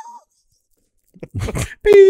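Men's voices in a small studio room: a drawn-out sliding vocal sound at the very start, then about a second of dead silence, then talking starts again and gets loudest near the end.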